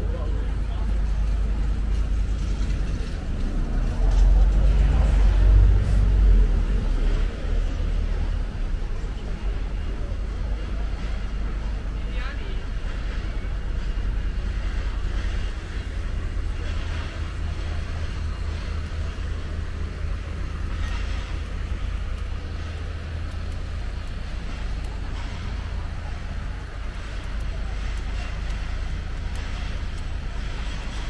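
City street ambience: road traffic going by, with one vehicle loudest about four to seven seconds in, and people talking in the background.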